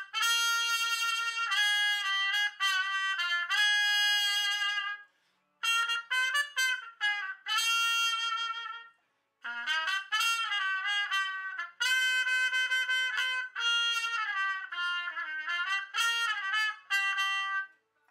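Trumpet played with a metal professional mute in the bell, which damps its volume for home practice. It plays a melodic passage of held and quicker notes in phrases, breaking off briefly about five seconds in and again about nine seconds in.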